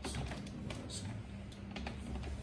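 Computer keyboard being typed on: several irregular keystroke clicks as a word is entered in a code editor.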